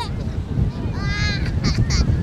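Wind buffeting the microphone, with a short, high-pitched call about a second in and two brief hissy sounds just after it.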